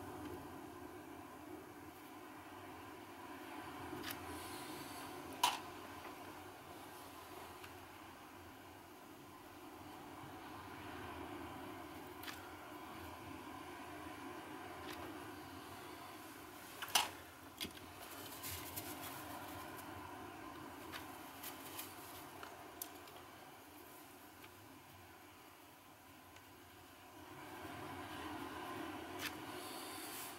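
Quiet room tone with a faint steady hum and a few scattered small clicks and taps, the sharpest about five and seventeen seconds in.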